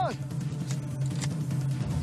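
Documentary background music with a steady low drone, and two faint sharp clicks about half a second apart near the middle.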